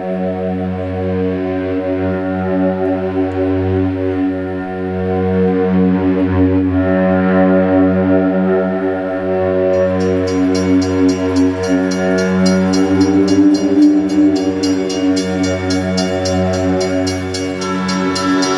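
Live band music: a slow, droning intro of long held, slowly swelling chord tones. About ten seconds in, a fast, even high ticking rhythm joins.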